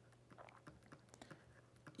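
Near silence with a few faint, scattered ticks of a stylus tapping and writing on a tablet screen.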